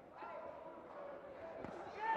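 Faint boxing-arena background with faint voices, and a couple of soft thuds of gloved punches landing near the end.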